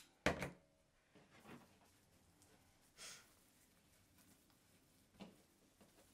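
A short sharp clack from a hand-held staple gun right at the start, then near silence with a few faint knocks and rustles of hands working the board and batting, one more small knock as the staple gun is set down on the wooden board near the end.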